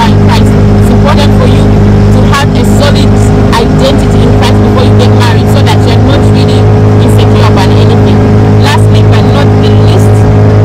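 A motorboat's engine running steadily at speed, its drone holding one pitch, with wind buffeting the microphone.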